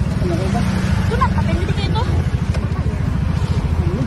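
Honda Vario scooter's single-cylinder engine idling with a steady low pulsing, under a few faint voice sounds.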